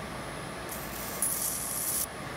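High-voltage arc sparking where the ozone cell's water-jacket discharge lines touch: a hissing crackle that starts under a second in and grows louder after about a second, over a faint steady high whine. The spark is the sign of current leaking through the cooling water, which can add to the generator's current losses.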